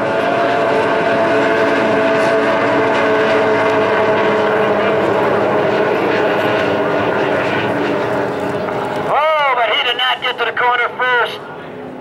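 Several D Stock hydroplanes' two-stroke racing outboards running flat out at racing speed, a loud, steady engine note made of several overlapping tones. The engine sound cuts off abruptly about nine seconds in.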